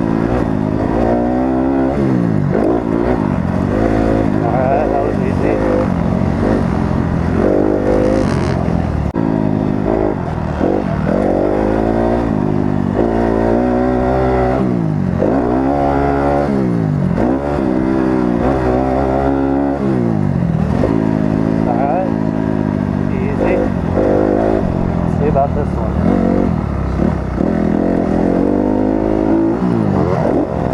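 Motocross dirt bike engine revving up and dropping back over and over, its pitch rising on each pull of the throttle and falling between, every second or two.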